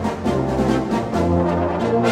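Intro music led by brass instruments, playing a few held chords that change every half second or so.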